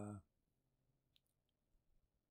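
Near silence in a small room after the end of a drawn-out 'uh', with two faint, sharp clicks of a computer mouse a little over a second in, the second about a third of a second after the first.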